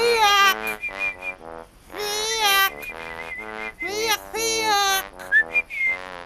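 Men imitating birdsong with their mouths: whistled, warbling calls that swoop up and down, three long ones about two seconds apart with shorter pulsed calls between.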